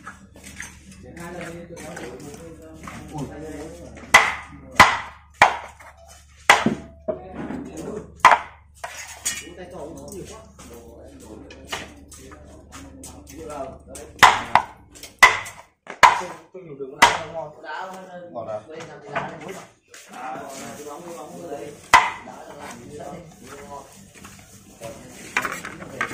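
Cleaver chopping bone-in boiled field rats on a wooden chopping board: irregular sharp chops with a short ringing tail, bunched in clusters, and the blade clinking on a ceramic plate in between.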